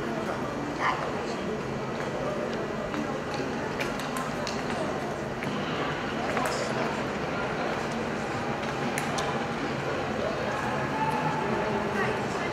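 Indistinct chatter of many voices around an ice rink, with scattered short, sharp clicks and knocks.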